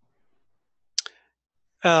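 A single short, sharp click about a second in, within a near-silent pause; a man's voice starts again near the end.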